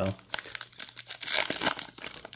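Foil wrapper of a baseball card pack crinkling and tearing as it is pulled open by hand, an irregular run of crackles.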